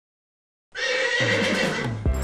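After a short silence, cartoon intro music starts suddenly, with a horse's whinny sound effect over it.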